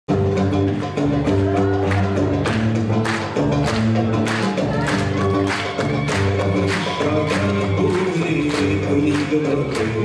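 Live band music built on a guembri, the Gnawa three-string bass lute, plucking a repeating low riff. Sharp percussive strokes mark the beat about twice a second.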